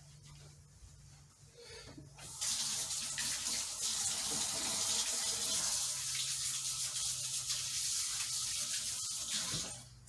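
Kitchen sink tap running while hands are washed under it: a steady rush of water that starts about two seconds in and is shut off near the end.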